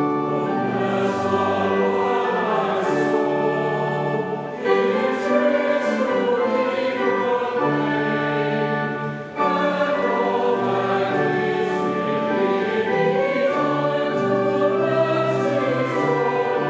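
Choir and congregation singing a hymn with pipe organ accompaniment, with short breaks between lines about four and a half and nine seconds in.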